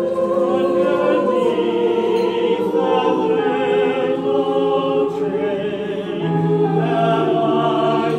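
Mixed choir of men and women singing together in harmony, holding long sustained notes. A strong low note joins about six seconds in.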